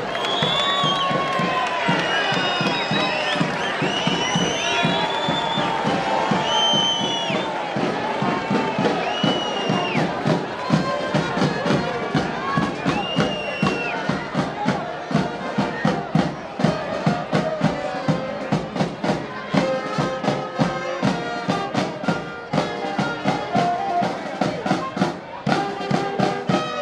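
A crowd cheering, then from about ten seconds in a marching street band of trumpets, saxophones, trombone and drums plays with a steady beat.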